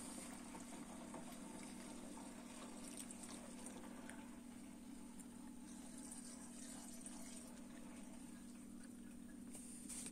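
Faint trickle of two-stroke oil draining through a plastic funnel into a metal fuel can, over a steady low hum.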